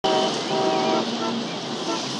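City street traffic noise, cars passing, with a car horn sounding for about the first second.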